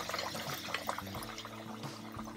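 Butter and vegetables cooking in a stainless steel skillet, with many small light crackles, as cubes of imitation crab meat are slid in from a glass bowl.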